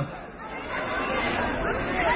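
Audience noise in a large hall: many voices chattering and murmuring together, growing from about half a second in.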